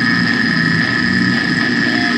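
A break in a slamming brutal death metal song: the drums and bass drop out, and a single high-pitched tone is held steady over a low rumbling haze.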